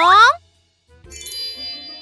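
A brief, steeply rising vocal cry at the start, then about a second in a bright cartoon sparkle chime that rings steadily.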